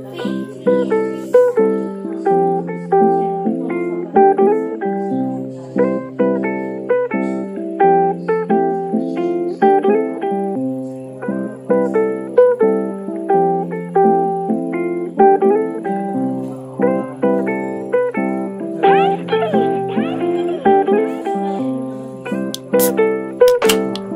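Background music: a plucked guitar picking out notes one at a time in a repeating pattern over a slowly changing bass line.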